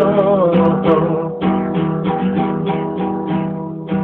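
Acoustic guitar strumming the song's accompaniment in a steady rhythm, with a held sung note wavering briefly at the start.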